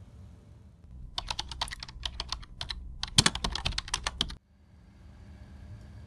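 A quick run of sharp clicks, like typing, for about three seconds, then cut off suddenly.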